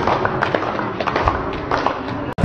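A run of irregular sharp knocks and taps over a steady background noise.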